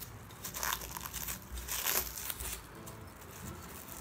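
Plastic wrapping crinkling in short, irregular crackles as it is pulled and peeled off a glass bottle by hand.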